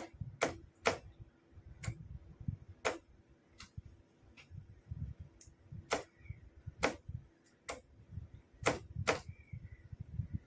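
A Morse signalling key clicking as it is pressed and released to flash a signal lamp: about a dozen sharp clicks at uneven intervals, with dull low thuds in between.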